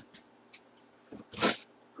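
Cardboard box being handled: a few faint taps, then one short, loud scraping rustle about one and a half seconds in.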